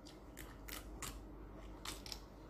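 Faint, crisp crunches of a raw vegetable being bitten and chewed, four or so sharp crunches spaced unevenly over two seconds.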